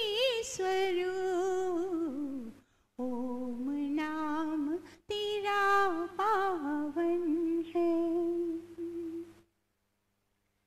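A woman's voice singing a slow, wordless devotional melody in three long phrases, with held notes and wavering ornaments, and short breaths between the phrases. The singing stops about nine and a half seconds in.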